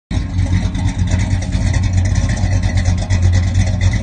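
A car engine running loudly with a deep, steady rumble, starting abruptly.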